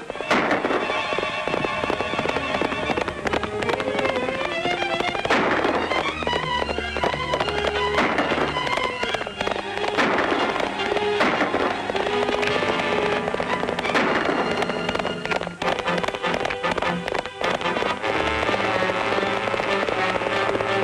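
Orchestral film score music, with sharp cracks breaking in over it at irregular intervals.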